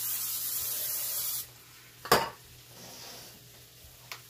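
Aerosol cooking spray hissing steadily into a hot cast-iron skillet, cutting off about a second and a half in. A sharp knock follows a little later, the loudest sound, then faint sizzling of the oiled pan.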